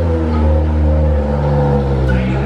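Engine of a Japanese drift car running at a steady idle, its pitch level and even.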